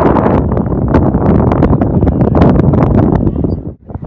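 Strong wind buffeting the microphone over the running rumble of a moving train, with a constant rough crackle. The sound drops out abruptly for a moment near the end, then resumes.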